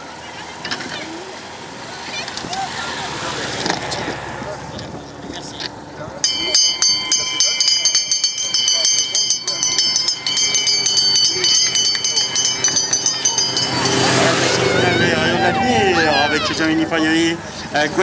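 A hand bell rung rapidly and without a break for about eight seconds, starting about six seconds in: the race bell announcing the last lap as the leading riders pass. A man's voice over a public-address system follows near the end.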